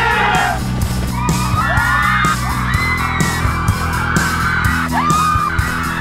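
Trailer music with a steady beat, with young men shouting and yelling over it.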